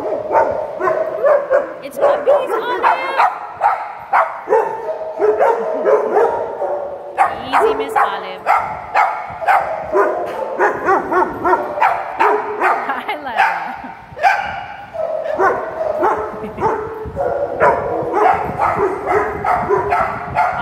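Dogs barking over and over, a couple of barks a second, with a few higher yips mixed in.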